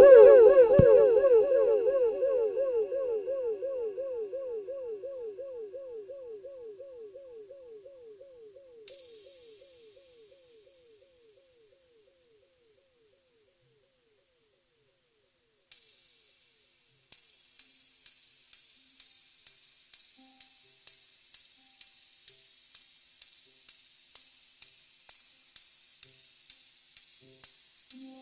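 Electronic music: a warbling synthesizer-like tone with fast, even pitch swoops starts loud and fades away over about ten seconds like an echo tail. Later come two single cymbal hits, then a drum-machine hi-hat ticking steadily about twice a second.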